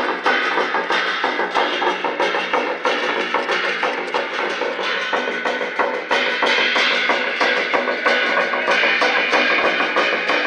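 Chinese lion dance percussion: a drum beaten in a fast, steady rhythm with clashing cymbals, playing continuously.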